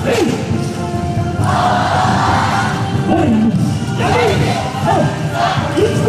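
A YOSAKOI dance team shouting together over loud dance music: one long massed shout from about one and a half to three seconds in, then shorter calls that swoop down in pitch.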